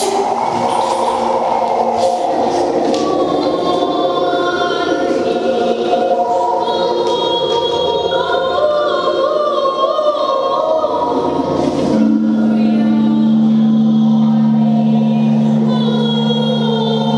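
A mixed choir of children and young adults singing, with voices holding long, slowly moving notes. About twelve seconds in, a deeper note comes in and is held steadily underneath.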